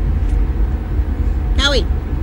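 Steady low rumble of wind on a phone microphone outdoors, with one short, high-pitched call of "Cowie!" near the end, falling in pitch: a person calling a young calf.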